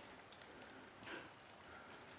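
Near silence: faint outdoor background hiss with a few soft ticks.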